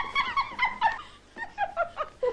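Several people laughing in short, high-pitched, warbling bursts, with a brief lull a little past halfway. It is a woman pinned down in play by children, and her laughing children.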